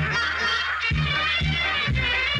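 Upbeat background music with a bouncing bass line, mixed with a flock of ducks honking and calling over one another.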